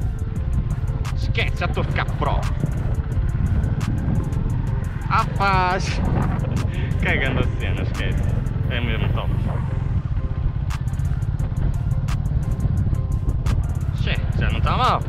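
Honda CB125R's small single-cylinder engine running as the motorcycle is ridden slowly in low gear, under a steady heavy rumble of wind on the camera microphone. Background music with a singing voice plays over it.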